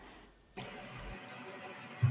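Near silence, then a click about half a second in as the sound switches over to a remote participant's video-call line, followed by a steady faint hiss from the open connection.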